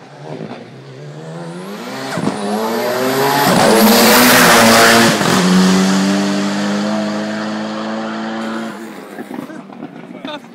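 Hill-climb race car coming up the course at full throttle. The engine revs higher with a brief break for a gear change about two seconds in and is loudest as it passes at about five seconds, where the pitch drops. It then holds a lower, steady note as it fades away.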